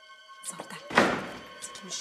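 A single sudden loud thud about a second in, over background music with held notes.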